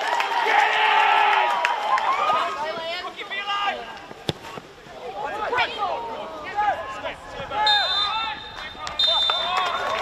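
Players shouting across a football pitch, with a sharp thump about four seconds in as a ball is kicked. Near the end a referee's whistle sounds in two long blasts, the full-time whistle.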